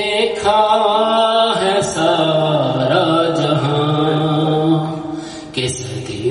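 An unaccompanied man's voice chanting devotional Urdu verse through a microphone in long, drawn-out melodic phrases. It holds one low note for several seconds in the middle.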